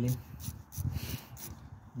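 A few light metallic clicks and rubbing of a wrench working loose the nut on a car battery's positive terminal clamp.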